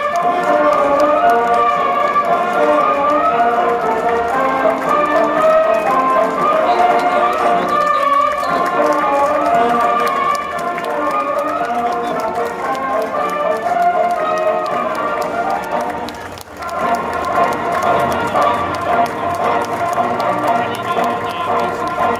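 A marching band playing music for a parade, with a brief drop in the music about three-quarters of the way through.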